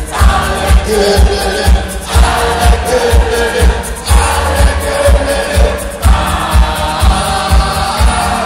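Live band music played loud over a concert PA, with a steady kick-drum beat about twice a second and singing in phrases of about two seconds, the crowd's voices joining in.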